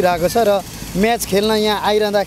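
A person talking, in a steady flow of speech.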